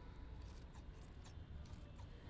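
Scissors snipping through spinach leaves and stems, several short, faint snips as the tops of the plants are trimmed off.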